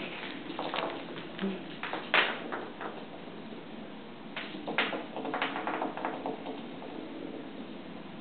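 A handful of light taps and knocks on a hardwood floor as a cat bats at a small motorized toy bug, the loudest about two seconds in and again near five seconds.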